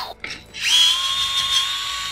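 DeWalt gyroscopic cordless screwdriver spinning a propeller nut off a racing drone's motor. Its motor starts about half a second in and runs with a steady, high whine.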